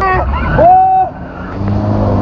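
Riders on a swinging amusement ride laughing and shouting. One voice holds a long cry about half a second in, and a low steady hum returns after a brief drop near the middle.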